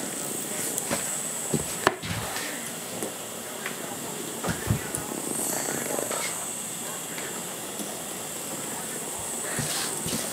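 Small battery-powered vibrating toy bugs buzzing as they skitter over a vinyl floor, with scattered sharp clicks as they knock about.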